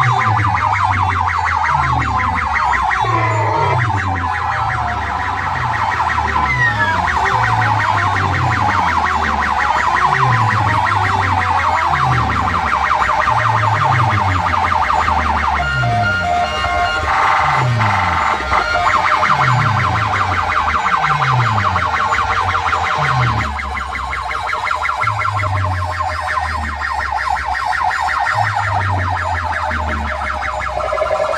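Very loud DJ music from sound systems built of stacked horn loudspeakers: repeated deep bass hits that drop in pitch, under a shrill, fast-warbling siren-like sound. The high warble thins out and the level dips a little about two-thirds of the way through.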